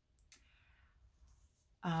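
A quiet pause holding a faint mouth click followed by a soft breath, with a woman's voice starting just before the end.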